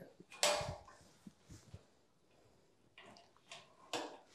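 Faint handling noises of a solar flood light and its electrical cable being fixed to a metal roof frame: a brief rustling burst about half a second in, then a few small clicks and knocks.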